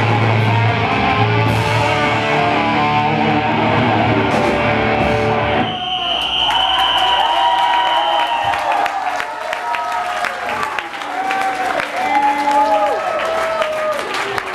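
A black metal band playing live, with distorted electric guitars, bass and drums, stops abruptly about six seconds in. The crowd then claps and cheers, and a high steady tone rings for about two seconds right after the stop.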